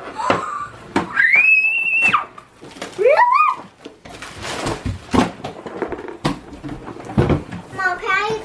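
A child's high-pitched excited squeal about a second in, then a shorter rising vocal exclamation. These are followed by several seconds of rustling and light knocks as tissue paper and a cardboard game box are handled.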